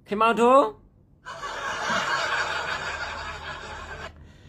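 A man laughing: a short voiced chuckle, then a long breathy snicker hissed through the teeth that lasts nearly three seconds and cuts off suddenly.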